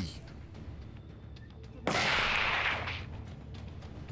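A single rifle shot from a Savage 110 Predator chambered in .22-250 Remington. The report comes suddenly about two seconds in and trails off over about a second against a low background hiss.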